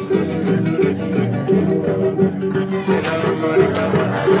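Background music led by a plucked string instrument, playing short notes in a steady, repeating rhythm.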